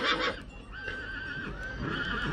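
Horse whinnying: a loud call that fades out about half a second in, then a second, fainter wavering whinny.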